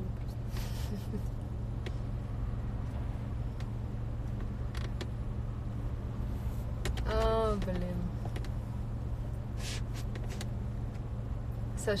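Steady low hum of a car idling, heard from inside the cabin, with a few faint clicks. About seven seconds in, a short voiced sound rises and falls in pitch.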